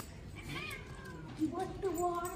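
A domestic cat meowing twice: a short call, then a longer drawn-out one.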